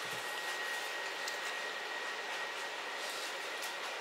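Steady background hiss with a thin, faint high tone held through it and a few faint ticks.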